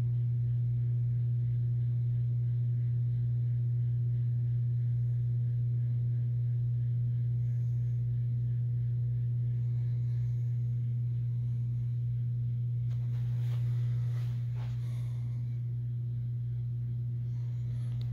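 Steady low electric hum with faint higher overtones, unchanging in pitch and level throughout.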